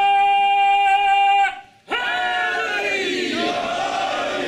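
One voice holds a long, steady, high wail, which breaks off about a second and a half in; after a brief silence, many mourners wail and cry out together in overlapping voices, the grieving of a congregation in mourning.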